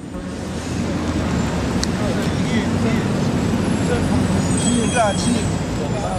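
Street ambience: a steady rumble of traffic that fades in at the start, with faint voices in the background.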